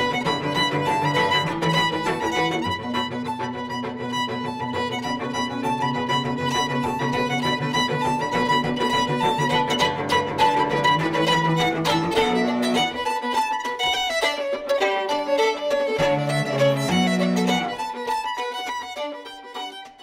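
A fiddle tune played on violin, over lower sustained backing notes for the first twelve seconds or so, then with sparser low notes, fading out near the end.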